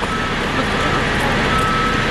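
Steady, loud street noise of running vehicle engines and traffic, with a faint high steady tone over it.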